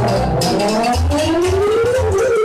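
Live lăutărească band music: a lead melody slides slowly upward in pitch in one long glide over a pulsing bass beat.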